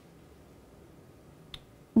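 Quiet room tone with one short, sharp click about one and a half seconds in; a woman's voice starts right at the end.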